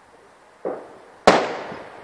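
Two New Year fireworks going off. A duller bang comes about two-thirds of a second in, then a sharper, louder bang a little after a second in, which trails away over most of a second.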